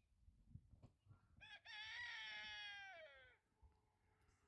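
Rooster crowing once: a short first note, then a long held note of about a second and a half that drops in pitch as it ends.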